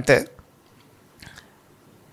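A man's spoken word trails off at the start, then a quiet pause with faint room tone and one brief, faint mouth noise picked up by the close microphone about a second in.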